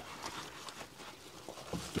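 Faint rustling and scattered light ticks as hanging onions and their dried necks are handled and pulled at under a mesh cover.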